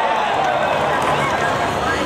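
Stadium crowd cheering and shouting, with long drawn-out voices that fade away about halfway through.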